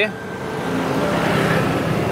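Street traffic noise from motor scooters riding past, growing louder over the first second and then holding steady.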